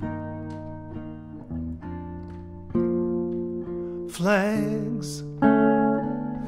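Gibson archtop jazz guitar playing slow chords, each struck and left to ring, a new chord about every second or so. A man's singing voice comes in briefly about four seconds in.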